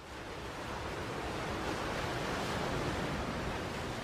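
Steady rushing of sea water and wind, fading in over the first second and then holding even.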